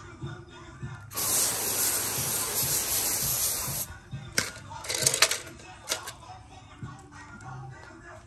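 Garden hose spraying water over chrome car trim. A steady spray starts about a second in and lasts nearly three seconds, followed by a few short bursts. Background music plays underneath.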